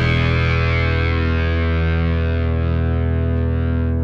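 Final chord of an indie rock song: a distorted electric guitar chord held and ringing on through effects, steady in level while its upper ring slowly fades.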